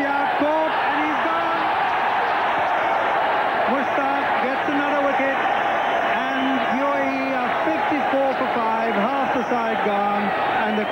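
Large stadium crowd cheering and shouting after a wicket falls, with many individual voices yelling above a steady roar.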